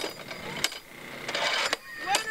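Mallet striking the lever pad of a high-striker (ring-the-bell) game: two sharp knocks about two-thirds of a second apart, then a brief rattling noise.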